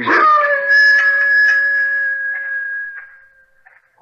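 A hound dog howling: one long, steady howl that fades out near the end.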